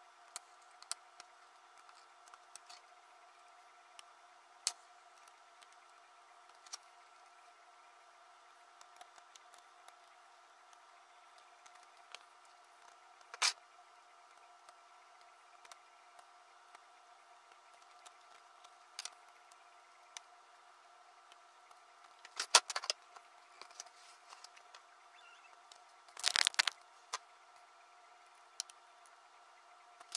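Small metallic clicks and scrapes of a hex key and screws on the Ender 3 V2's sheet-metal electronics cover as it is screwed back on, scattered and sparse, with two louder bursts of clicking and scraping in the last third. A faint steady hum runs underneath.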